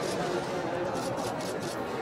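Photographers' camera shutters clicking, a quick run of several clicks about a second in, over a steady murmur of crowd chatter.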